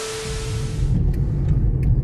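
Low steady road and engine rumble inside a moving car's cabin. In the first second a hiss fades out, with a faint steady tone under it.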